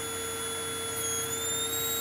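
Flyback transformer high-voltage supply running, giving a steady electrical whine and hum whose high tones waver slightly in pitch, as it drives a faint corona discharge just short of arcing.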